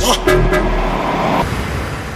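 Closing seconds of a deep house track: the beat gives way to a held bass note and chord with a noisy wash, which drops back about one and a half seconds in and then fades away.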